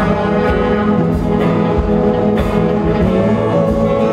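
Live band playing: electric guitars over drums, with sustained chords and drum hits at a steady loudness.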